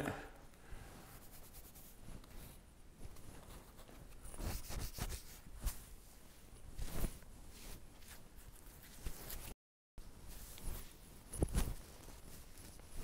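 Faint rustling and scratchy rubbing of hands working oil through a long, thick beard, in scattered soft strokes.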